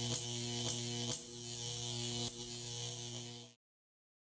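Neon-sign sound effect: a steady electrical hum and buzz with a handful of sharp crackling clicks as the tubes flicker on. It cuts off suddenly about three and a half seconds in.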